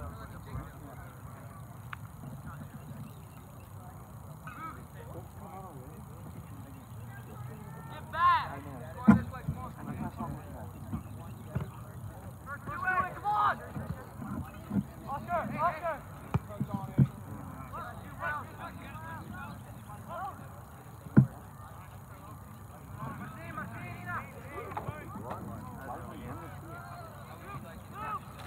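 Soccer players and spectators shouting across the field in scattered calls, with two sharp thuds of a soccer ball being kicked, about a third of the way in and again, loudest, about three-quarters of the way through.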